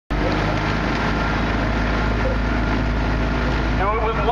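Outboard motor of a coaching launch running steadily at cruising pace, a low even hum under a constant rush of wind and water noise.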